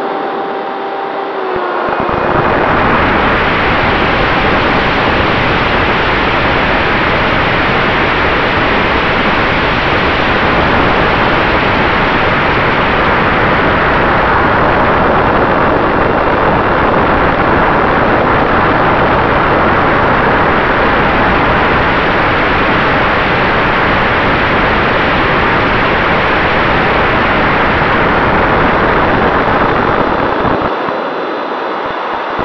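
Steady, loud rush of air and electric ducted-fan noise picked up by a camera riding on a Freewing F-86 Sabre RC jet in flight, with a faint steady fan whine running through it. In the first two seconds the rush thins and a whine drops slightly in pitch, then the full rush returns.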